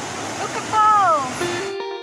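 Steady rushing of Huka Falls' white water, the Waikato River forced through a narrow rock chasm. The water sound cuts off suddenly near the end as guitar background music takes over.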